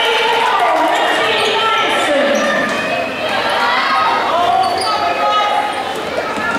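Basketball dribbling on a gymnasium's hardwood floor during a game, under steady, indistinct chatter of spectators and players' voices echoing in the large hall.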